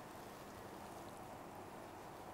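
Faint, steady room tone with no distinct sound events.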